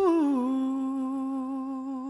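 A singer's final held note at the end of a Khmer pop song, unaccompanied once the backing stops: the voice slides down to a lower note and holds it, slowly fading.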